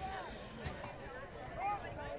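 Faint, scattered shouting of football players and sideline voices on the field as a play is snapped and run.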